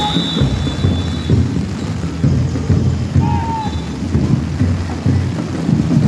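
Heavy rain pouring down, a dense steady wash with an uneven low rumbling underneath.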